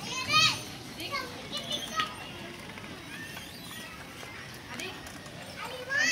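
Young children's high-pitched voices: a loud squeal about half a second in, a few short calls and chatter after it, and another squeal near the end.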